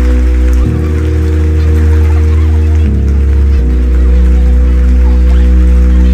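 Electro track intro: held synth chords over a deep bass, the chord changing every second or two, with no vocals.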